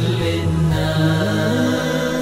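A man singing a nasheed in long held notes that step upward in pitch, over a low sustained drone.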